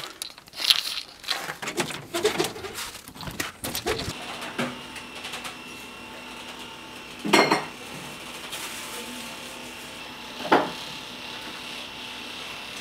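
Handling noises and knocks for about four seconds, then a steady faint hum broken by two clunks of dishes, about three seconds apart.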